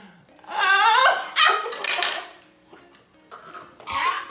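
People crying out without words as they bite into a syrupy rosogolla: two loud yelps with wavering pitch in the first two seconds, then quieter, and another outburst near the end.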